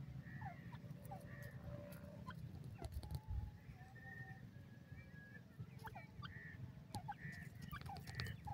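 Faint, soft bird calls: many short chirps and downward-sliding notes, a few held whistled tones, scattered sharp clicks, and a low rumble underneath, with a brief louder low thump about three seconds in.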